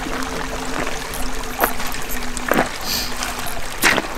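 Shallow creek water trickling over stones, with a few sharp clicks and rustles of handling, about three of them, near the middle and end. A faint steady hum sits underneath and stops a little past halfway.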